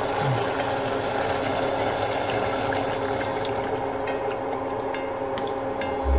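Coconut milk being poured from a bowl into a stainless steel pot of cooked meat, a steady liquid pour splashing onto the meat.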